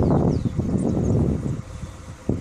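Wind buffeting the microphone: an uneven low rumble that surges and eases off near the end.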